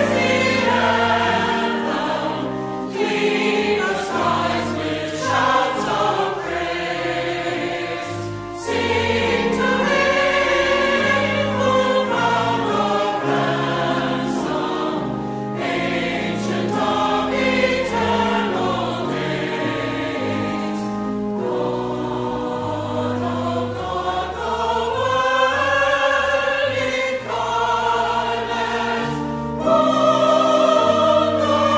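Church choir singing a choral anthem over sustained low accompaniment, getting louder right at the end.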